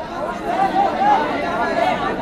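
Several people talking over one another, an indistinct chatter of voices with no single clear speaker.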